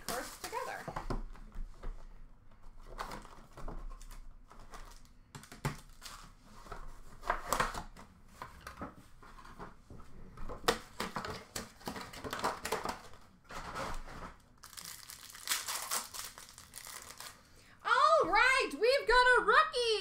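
Packaging of Topps Chrome Black baseball card boxes crinkling and tearing in irregular bursts as the boxes are unwrapped, handled and opened. A man's voice starts near the end.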